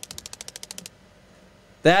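Prize-wheel ticking: a rapid, even run of sharp ticks, about fifteen a second, that stops just under a second in, the sound effect of a stream alert for a wheel spin. A word of speech comes right at the end.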